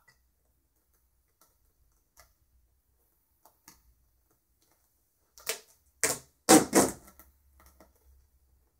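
Hands handling a painting canvas and string: a few faint ticks, then about five seconds in a quick cluster of sharp taps and scuffs, followed by small clicks.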